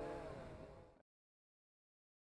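Bayangtoys X21 quadcopter's motors and propellers whirring in flight, fading out about a second in and then cut to silence.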